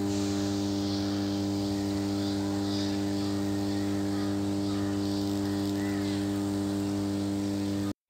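Power transformer humming steadily: a low, even hum with a stack of evenly spaced overtones. The hum comes from magnetostriction, the laminated steel core stretching and relaxing with the alternating magnetic flux.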